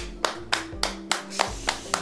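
A person clapping their hands, about five claps a second.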